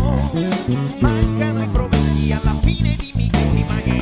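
Electric bass played along with a full band recording, bass notes under regular drum hits and a wavering melodic line.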